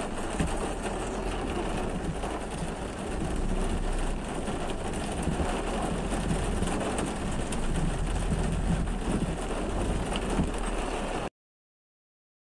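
Car heard from inside while driving in the rain: steady engine and road rumble with rain on the windscreen. The sound cuts off abruptly near the end.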